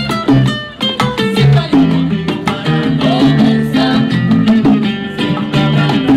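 Live Cuban salsa-style music played on acoustic guitar, electric bass and bongos: a plucked guitar line over bass notes with quick bongo strokes, no singing.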